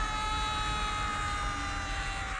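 Cartoon sound effect of a fall: a held, whistle-like tone that slowly drops in pitch over a low rumble.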